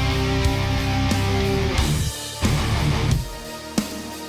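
Recorded rock song with electric guitars and drums. About two seconds in, the full band thins out to sparser guitar broken by a few sharp hits.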